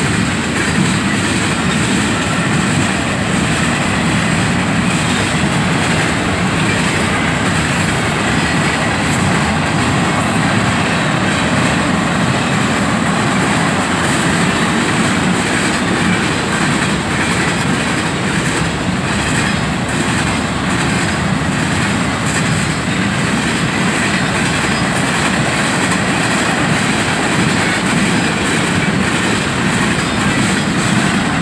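Tank cars and covered hoppers of a Norfolk Southern mixed freight train rolling past: a steady, loud rumble of steel wheels on rail, with irregular clicking clatter from the wheels.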